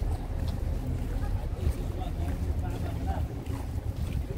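Wind buffeting the microphone in a low, uneven rumble, with faint voices of passers-by in the background.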